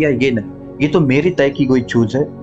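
A man speaking in Hindi over soft, steady background music.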